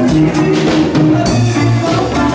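A live Latin rock band playing: congas and drum kit over electric guitars and bass guitar, at a steady loud level.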